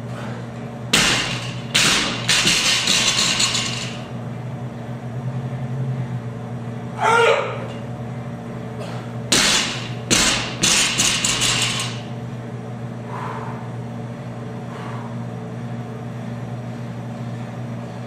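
Loaded 135 lb barbell dropped from overhead onto the gym floor twice: each time a loud crash, a second hit as it bounces, then the bar and plates rattling for about two seconds. A short rising pitched sound comes between the two drops, over a steady low hum.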